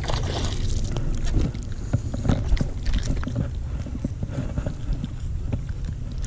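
A hooked bass splashing at the water's surface beside a boat as it is landed by hand: irregular short splashes and handling knocks over a steady low wind rumble on the microphone.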